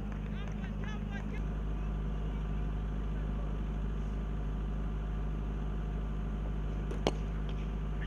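A single sharp crack about seven seconds in: a cricket bat striking the ball. It sits over a steady low hum.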